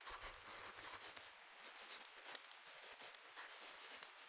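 Faint scratching and light tapping of a pen stylus writing words by hand on a tablet, in short strokes.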